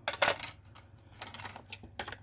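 Plastic lid of an ink pad being pulled off and put down on the craft mat: a sharp click soon after the start, then lighter taps and clatters near the end.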